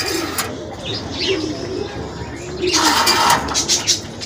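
Domestic pigeons cooing, with low, wavering coos throughout. A brief rustling noise rises about three seconds in.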